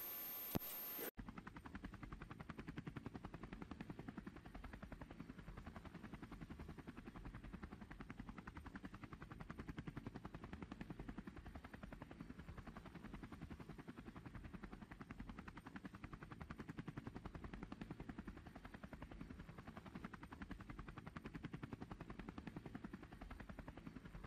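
Faint, rapid, steady chopping of a police helicopter's rotor, heard from aboard the helicopter. It follows a short hiss with a hum that cuts off about a second in.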